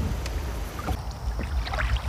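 Hand-carved wooden canoe paddle working through the water, with small splashes and a few light knocks, over a low steady rumble.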